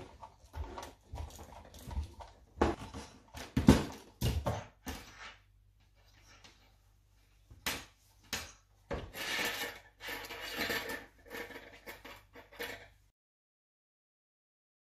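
Irregular knocks and rustling as a clothes iron is set down and moved over a dress on a tabletop and the fabric is handled. The loudest knock comes a little under four seconds in, and the sound cuts off suddenly near the end.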